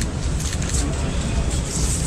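Steady low rumble of outdoor background noise with an even hiss above it and no distinct events.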